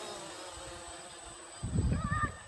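Quadcopter's four propellers buzzing as it climbs away, the whine fading steadily as it gains distance. Near the end a louder low rumble comes in.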